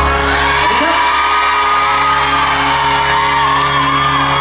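Live pop song played loud through a stage PA: steady held chords under a wavering melody line, with singing.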